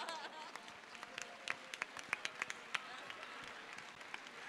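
Scattered clapping from a church congregation, a dozen or so sharp separate claps over a faint haze of applause, thinning out after about three seconds.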